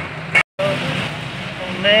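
Steady background hum with faint voices, broken by a sudden dropout to complete silence lasting about a tenth of a second, about half a second in, where two interview takes are spliced together.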